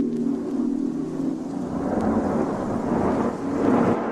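Beatless dub techno breakdown: a held, low chord pad with a wash of rumbling noise that swells up through the second half and peaks just before the end.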